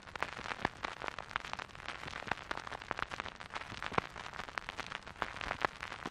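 Stylus riding a spinning vinyl record: steady surface hiss with many irregular crackles and pops, no music yet.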